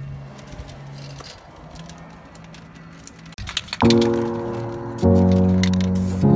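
Background music: sustained chords come in about four seconds in and change again about a second later, after a few seconds of faint low hum.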